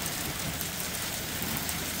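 Steady rain mixed with tiny hail pellets coming down, an even hiss.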